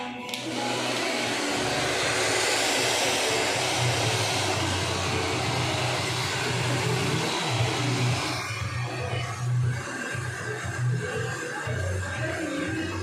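Handheld hair dryer blowing steadily while hair is blow-dried over a round brush; its rush eases about eight seconds in.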